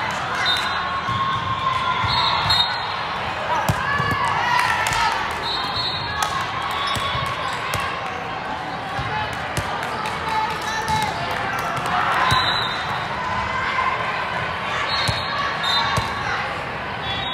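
Volleyballs being hit and bounced, many sharp knocks echoing through a large hall, amid the voices and calls of players and spectators.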